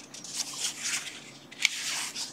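Pages of a paper instruction manual being handled and turned: a soft rustle of paper, with a sharper flick of a page near the end.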